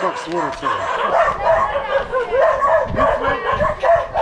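Dogs barking over and over in quick, overlapping barks, the sound of dogs guarding their ground against people approaching on the path.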